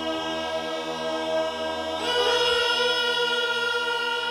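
Background music of a choir singing long sustained chords, the chord changing about halfway through.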